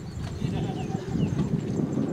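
Outdoor field ambience: uneven low rumbling of wind on the microphone, with several short bird chirps over it.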